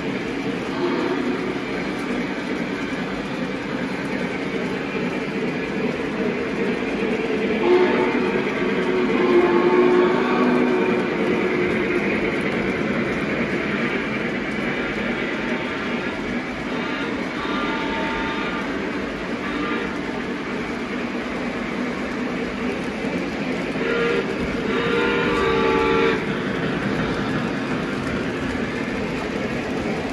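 Lionel O-gauge model trains running on track, a steady rolling rumble of wheels and motors. A train horn blows three times over it: once about eight seconds in for a few seconds, again around seventeen seconds, and a louder blast near twenty-four seconds.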